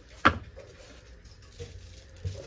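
A single sharp click of a plastic seasoning-jar lid being handled as the jar is opened.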